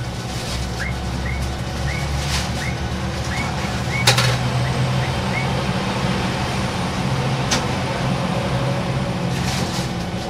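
A diesel railcar running past on the adjacent track, its engine loudest about four to five seconds in, with single wheel knocks over rail joints as it goes by, the sharpest about four seconds in. A standing diesel railcar's engine idles underneath throughout.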